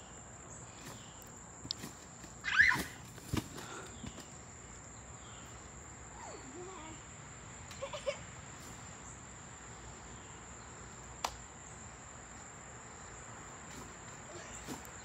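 Insects chirring steadily in a single high, thin, unbroken tone. A few faint knocks and clicks come from the trampoline as it is bounced on, and a brief voice sounds about two and a half seconds in.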